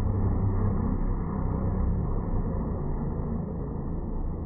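Formula 1 cars' V6 turbo-hybrid engines heard as a low, steady rumble that slowly dies away as the cars pull away down the track.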